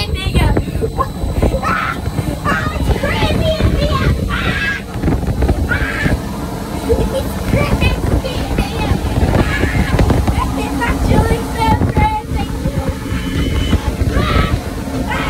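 Hurricane simulator's blower wind at about 50 mph buffeting the phone microphone, a loud, gusty low rumble throughout. A child laughs and shrieks through it.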